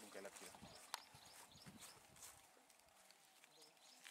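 Near silence outdoors: faint distant voices at the start, a single sharp click about a second in, and faint high chirps.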